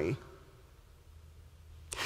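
A pause in a man's speech: quiet room tone with a faint low hum. His voice trails off at the start and starts again just before the end.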